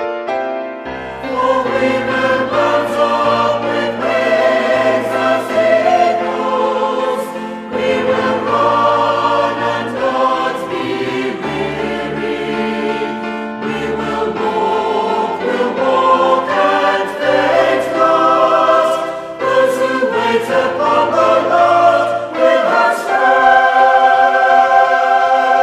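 A choir singing a Christian worship song over an accompaniment whose low bass notes change every second or two.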